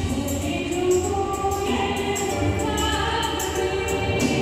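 Amplified live band music with singing, a sung melody with held notes over the accompaniment.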